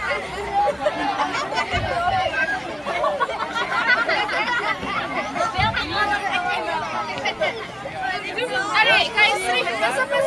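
A group of children chattering and calling out together, many voices overlapping, with no clear words.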